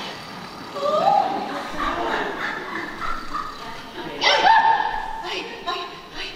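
A woman's voice making wordless, pitch-gliding exclamations: a rising cry about a second in, then a louder cry that jumps up and is held for about a second, about four seconds in.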